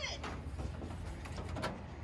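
Quiet handling of nylon cord as it is tied into half hitches: faint rustling with a couple of light clicks, over a low steady background rumble.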